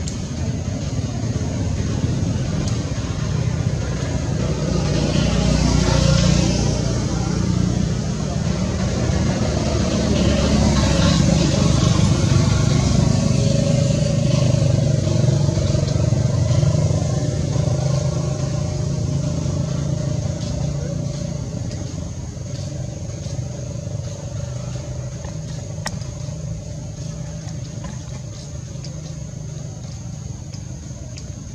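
Low rumble of motor-vehicle engines, swelling about five seconds in and again from ten to seventeen seconds, then slowly fading. A steady high whine runs underneath.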